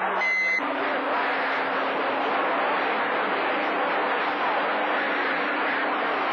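CB radio receiving skip on channel 28: a short beep near the start, then a steady hiss of static with a low steady hum tone running under it.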